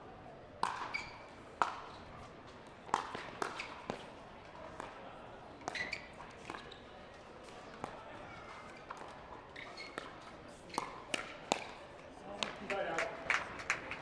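Pickleball paddles hitting a plastic pickleball in a rally: a series of sharp pops at irregular intervals, some close together. Voices rise near the end.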